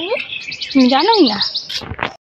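Small birds chirping in a quick run of short, high notes for about a second, with a person's voice rising and falling beneath them.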